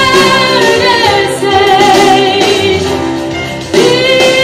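A woman singing a pop song live into a microphone over instrumental backing. She holds long notes, sliding down in pitch about a second in, and starts a new, louder phrase just before the end.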